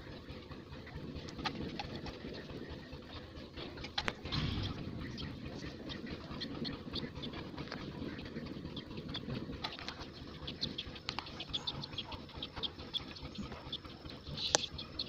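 Green PPR plastic pipe and fitting being pressed onto and worked against the heating dies of a socket-fusion pipe welder: small clicks and handling noise, with one heavier knock about four seconds in. Birds call in the background.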